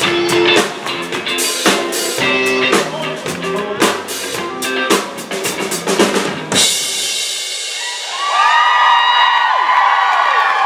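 Live band playing a drum-led rock beat that cuts off suddenly about two-thirds of the way through, the stop in a game of musical chairs. Then comes a burst of high-pitched shrieks and cheering from the audience.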